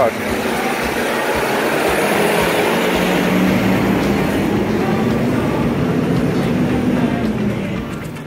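Heavy truck engine running close by in street traffic: a loud, steady drone that eases off near the end.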